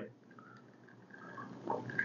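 Near-quiet room, then faint handling noise building up over the last half second, ending in a light click: a Glencairn whiskey glass being picked up off the table.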